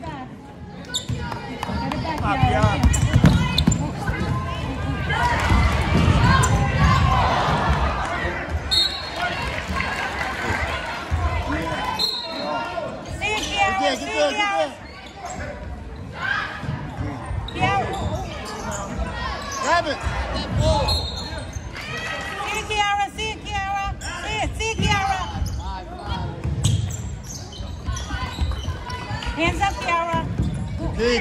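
Basketball game sounds in a large gym: a ball bouncing on the hardwood court among spectators' and players' voices and shouts.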